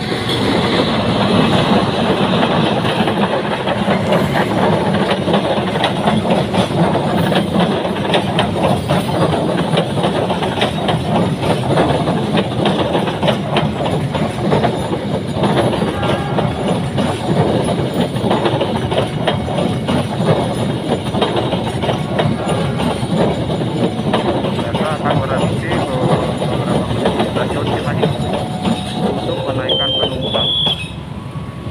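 Argo Parahyangan passenger train, hauled by a CC206 diesel-electric locomotive, passing close by: a loud, continuous rumble and rapid clatter of steel wheels on the rails as the locomotive and then the carriages go past.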